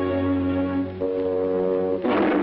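Orchestral cartoon score: held brass chords over a low sustained bass note, the chord changing about a second in.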